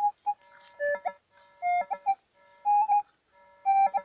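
Metal detector signalling with short electronic beeps about once a second as its coil is swept over a dug hole, the pitch stepping up or down from beep to beep. The signals mean more metal still lies in the hole, which the detectorist takes for possibly more coins.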